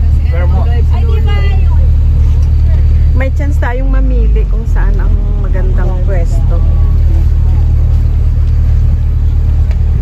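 Open-top tour bus running with a steady low rumble, its pitch shifting slightly about four seconds in. Voices talk over it for most of the first seven seconds.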